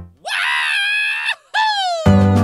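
A high-pitched, scream-like cry: it rises and holds for about a second, then after a short break a second, shorter cry slides down in pitch.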